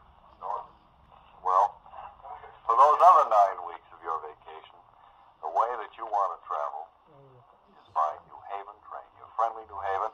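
A recorded vintage-style radio advertisement for the New Haven railroad, a voice with a thin, radio-like sound, played from the sound decoder and onboard speaker of a Rapido ALCO PA model diesel locomotive.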